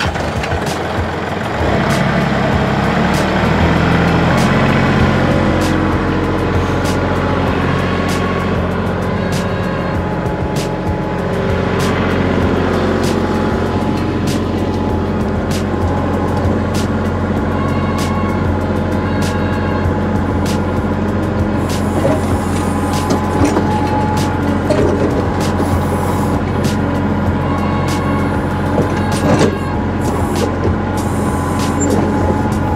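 Kubota compact tractor's diesel engine running at raised revs, getting louder about two seconds in, as its backhoe works. Scattered knocks and scrapes as the bucket pries up and lifts slabs of broken concrete.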